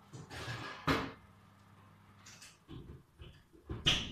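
Kitchen handling sounds: a brief rustle, then a few knocks and clicks of things being moved, with a sharp click near the end.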